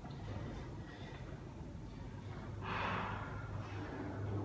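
A man breathing hard while recovering between sets of push-ups, with one loud exhale lasting about a second, starting about two and a half seconds in. A steady low hum runs underneath.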